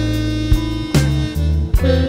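Slow blues band playing: bass notes and drum beats under sustained guitar, with a woman's voice coming in on the word "When" at the very end.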